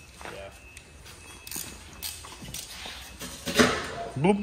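Short scraping and rustling noises of shipping packaging being handled at a crated side-by-side's front wheel, the loudest near the end, with faint voices underneath.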